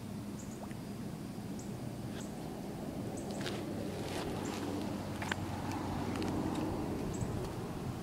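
Outdoor ambience by the water: a steady low motor hum, with a few faint, short high chirps and light clicks scattered through.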